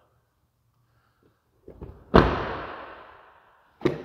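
Pickup truck's rear crew-cab door slammed shut once, about two seconds in, after a few small clicks of handling. The bang rings on in the room for over a second as it fades.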